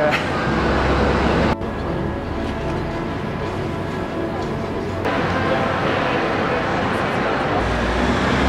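Street ambience: steady traffic rumble and noise with faint music underneath, changing abruptly about a second and a half in and getting a little louder around five seconds.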